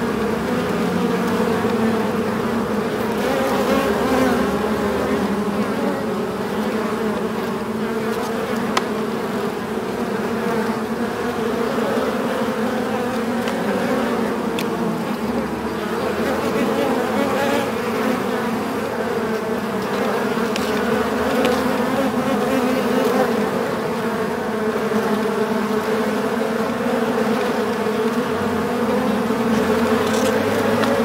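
Many bees buzzing at a beehive: a dense, steady hum with no break.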